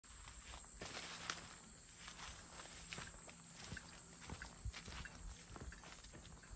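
Faint footsteps of a person walking along a path strewn with dry leaves: irregular soft steps, with a few sharper crunches.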